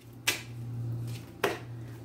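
Tarot cards being handled: two short sharp snaps about a second apart as the deck is picked up and worked in the hand, over a low steady hum.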